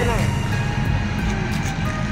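Steady low background rumble of an outdoor gathering, with faint music playing. A voice trails off at the very start.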